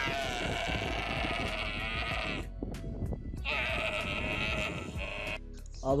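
Young dromedary camels bawling while being lifted down from a pickup bed: two long, wavering calls, the second starting about three and a half seconds in and shorter than the first.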